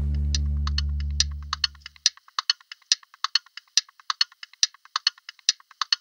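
A low held note fades out over the first two seconds, while a run of quick, irregular clicks, about seven a second, goes on throughout.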